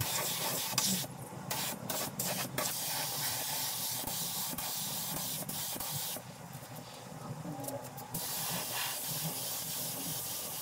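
Gravity-feed spray gun hissing as compressed air sprays paint onto a motorcycle fuel tank. The hiss cuts off and restarts several times in the first few seconds, then stops for about two seconds midway before starting again.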